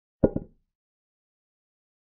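A chess program's piece-capture sound effect: a short sharp double click, two strikes about a tenth of a second apart, as a pawn takes a knight.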